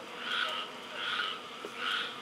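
Background chorus of pulsing animal calls, swelling and fading about every three quarters of a second.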